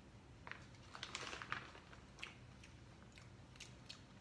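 A person chewing a pinch of shredded vegan cheddar-style cheese: faint mouth sounds with scattered small clicks, a few of them bunched together about a second in.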